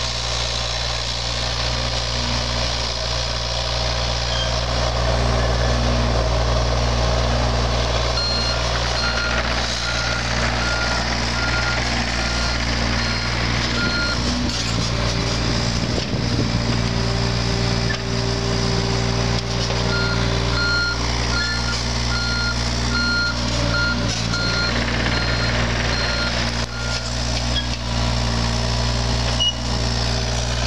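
John Deere 35G compact excavator's diesel engine running steadily under work. Its travel alarm beeps in two runs of about six seconds each, one starting about eight seconds in and one about twenty seconds in, as the machine moves on its tracks.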